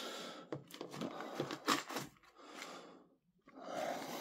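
Rustling and a few light clicks from cardboard medicine boxes and tablet blister packs being handled, with a short quiet pause about three seconds in.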